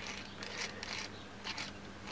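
Faint scratching and light clicking of small stainless-steel atomizer parts handled and turned between the fingers, in four or five short bursts.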